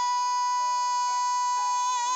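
A male singer holds one long high sung note, dead steady in pitch, over quiet instrumental accompaniment in a gospel song sung in Portuguese.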